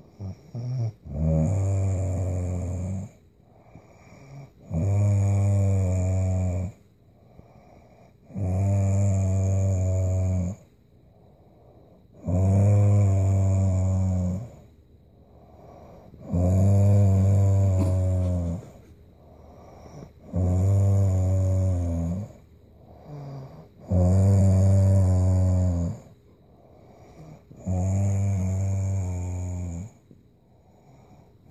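A woman snoring in deep sleep: eight long, loud snores at a steady pace, about one every four seconds, each with a low, steady pitch and quiet breathing between them.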